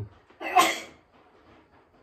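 A single short, sharp burst of breathy vocal noise from a person, about half a second in.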